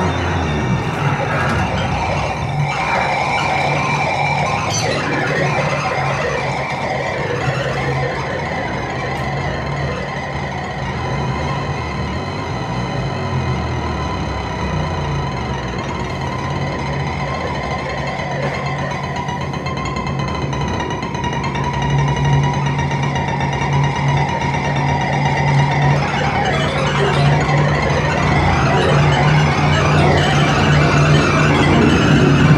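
Live experimental electronic music from a laptop ensemble, played over loudspeakers. It is a dense, unbroken layering of drones, with a low hum and a held middle tone, and it grows slightly louder in the last few seconds.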